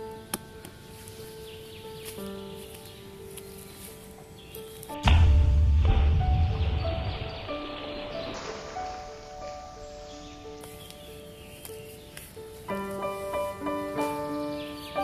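Background music with slow held notes plays throughout. About five seconds in, a sudden loud low thump and rush of noise fades away over two to three seconds: a ball of groundbait made of soil, rice and pellets landing in a pond.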